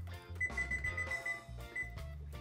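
Electric range's control-panel beeper sounding as a cooking timer is keyed in: a high electronic beep lasting about a second, then a short beep near the end. Background music with a steady low beat plays underneath.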